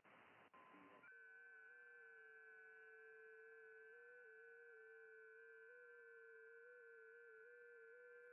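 FT8 digital-mode signals in a ham radio receiver's audio on 20 metres, faint. About a second in, the band hiss drops and several steady tones at different pitches start together as a new 15-second receive period begins, each shifting in small pitch steps.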